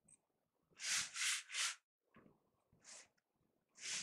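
Hand-pump spray bottle misting water onto paper: three quick squirts about a second in, then two single squirts later on.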